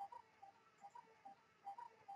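Near silence: faint room tone with quiet, short pips a few times a second.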